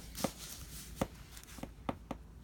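Hands handling paper and a fountain pen: a faint rustle and three light clicks, one near the start, one about a second in and one near the end.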